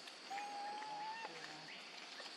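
An animal's single whistled call, about a second long, holding one pitch and rising slightly before it breaks off. It sits over a steady high insect hum.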